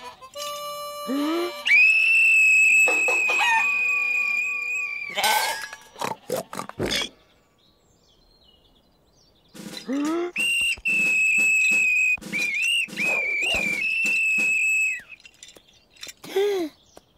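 Metal whistle blown in two long, steady high-pitched blasts: the first about two seconds in, lasting some three seconds, the second starting about halfway through and running for about four and a half seconds, with a few quick dips in pitch near its end.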